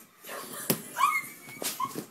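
A girl's muffled high-pitched squeals behind her hand: a short squeaky whimper about a second in and another near the end, with a couple of sharp knocks and rustling from the phone being moved.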